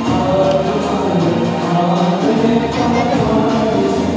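Several voices singing together, with musical accompaniment, one continuous song.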